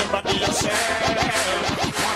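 Dancehall music in a DJ mix, with record scratching: rapid repeated back-and-forth pitch sweeps over the beat.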